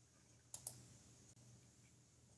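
Two sharp clicks in quick succession about half a second in, over a faint steady low hum; otherwise near silence.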